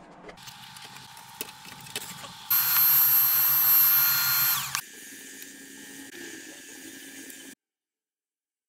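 Handheld cordless vacuum cleaner running steadily. It is much louder, with a strong hiss of air, from about two and a half to five seconds in, then its tone changes and it cuts off shortly before the end. A few light clicks come from handling the NAS case in the first seconds.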